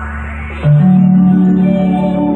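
Band music with steady held notes; about half a second in a louder, lower note comes in and holds.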